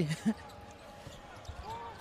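A basketball being dribbled on a hardwood court: a few faint bounces in the second half, heard low under the arena's background.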